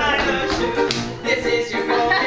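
Upbeat live stage music from a small band with upright bass and piano, with a sharp tapping beat about twice a second.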